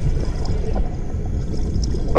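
Underwater ambience sound effect: a steady low rumble with faint bubbling.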